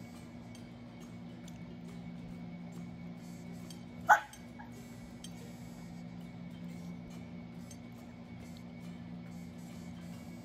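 A French bulldog gives one short, sharp bark about four seconds in, falling in pitch: a demand bark while it waits to be given food. A steady low hum runs underneath.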